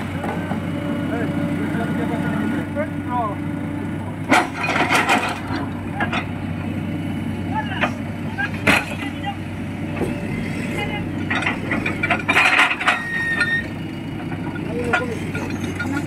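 Tata Hitachi excavator's diesel engine running steadily under load as its bucket pushes a large boulder, with several sharp knocks of the steel bucket against the rock.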